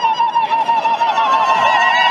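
Women in a crowd ululating: a high, rapidly warbling trill, several voices overlapping and sustained throughout, a joyful greeting as the cardinal passes.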